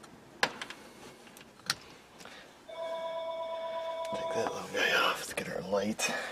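A few sharp plastic clicks as a car's rear speaker is pulled out of its trim panel. Then a steady electronic beep of several pitches that holds for nearly two seconds and stops, followed by a short wavering voice-like sound near the end.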